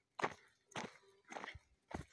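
Footsteps on a stony dirt path, four steps about half a second apart.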